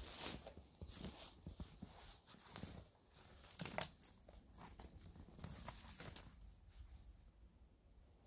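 Faint footsteps crunching irregularly through snow and dry cut brush, with one louder crunch about halfway through.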